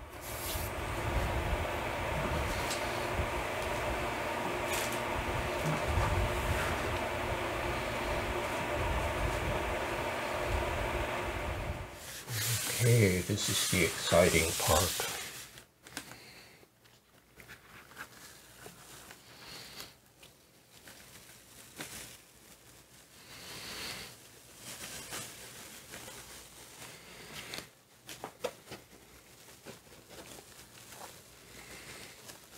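Electric fan running with a steady hum, which stops about twelve seconds in after a few loud knocks and clatters. Faint rubbing of hands pressing printmaking paper down onto a Gelli plate follows.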